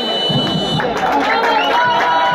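Referee's whistle blowing one steady high blast of just under a second to start play, over constant stadium crowd noise and a commentator's voice.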